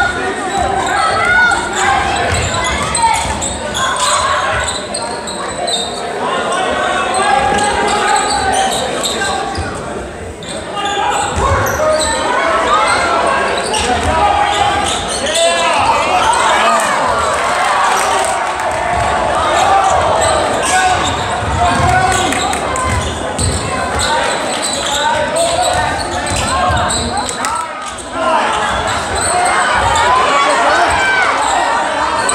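Basketball game in a gym: a ball being dribbled on the hardwood court, with crowd and players' voices and shouts all through, echoing in the large hall.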